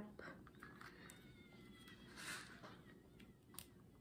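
Near silence with faint handling of a small plastic syrup cup: a soft rustle about two seconds in and a small tick near the end, with a faint thin high tone around the one-second mark.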